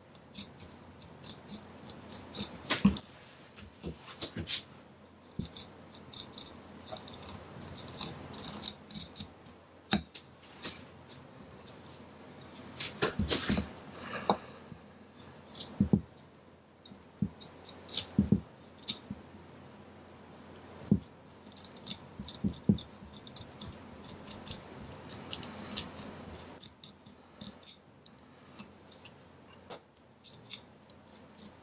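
Deba knife working along a cutlassfish's bones on a wooden chopping block: irregular scraping and clicking as the blade cuts the fillet free, with a few sharper knocks.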